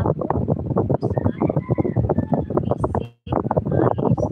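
A woman talking over crackly, clicking phone-livestream audio, which cuts out completely for a moment about three seconds in.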